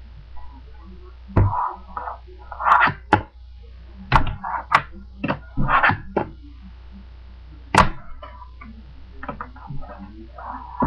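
A fingerboard clacking against a hard tabletop obstacle as tricks are popped and landed. It comes as clusters of sharp clacks with a short ring, one strong single clack near the eighth second, and brief pauses between runs.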